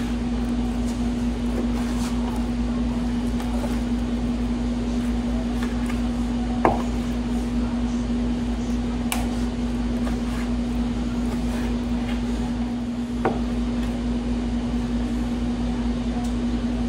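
Steady mechanical hum of a room appliance, one steady pitch under a low rumble, with three short knocks of a knife against a wooden cutting board as meat is sliced.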